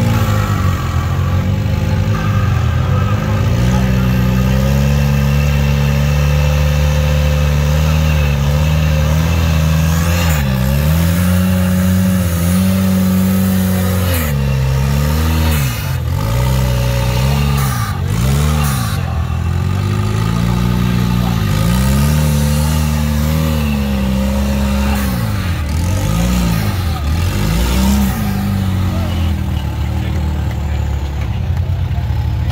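Rock crawler's engine working under load. It holds steady revs for the first ten seconds or so, then drops and picks back up repeatedly through the second half as the throttle is lifted and stabbed again.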